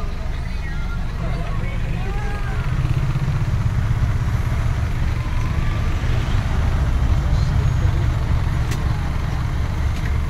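Steady low rumble of a coach bus's engine and running gear heard from inside the passenger cabin, swelling slightly a few seconds in, with faint voices over it.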